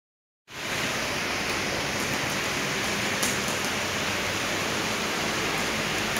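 Heavy rain pouring down steadily, a dense, even hiss that starts about half a second in.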